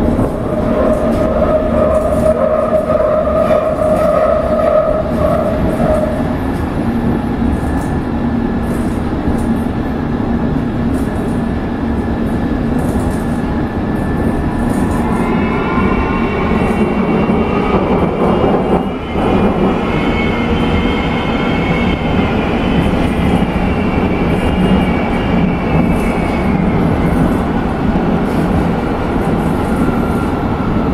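A London Underground S Stock train running through a tunnel, heard from inside the carriage: a steady loud rumble of wheels on rail. A whine in the first few seconds fades out. About halfway through, a higher whine of several tones rises, holds, and fades again near the end.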